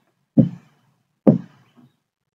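Two short knocks about a second apart, each starting sharply and dying away quickly.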